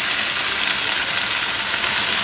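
Chicken breast pieces and freshly added red capsicum strips sizzling in a hot nonstick grill pan, a steady crackling hiss.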